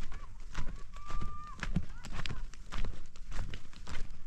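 Footsteps crunching and knocking on dry, stony dirt, a couple of steps a second, irregular. Early on a thin high note is held for about a second.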